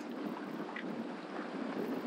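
Steady wind rushing over the microphone in a strong breeze, an even hiss without distinct events.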